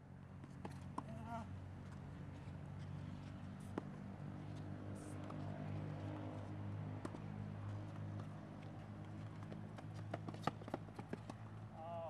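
Faint tennis rally on a hard court: sharp pops of racket strikes and ball bounces a few seconds apart, with a quicker run of them near the end, over a steady low hum.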